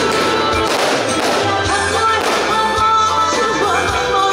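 A woman singing into a microphone over amplified backing music with a steady bass beat.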